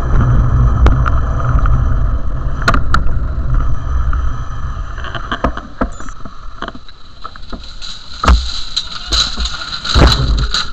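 A steady low rumble for the first few seconds, then a run of clattering knocks and crashes, loudest near the end, as a tractor towing a cultivator strikes and knocks over plastic traffic cones and road-closure signs.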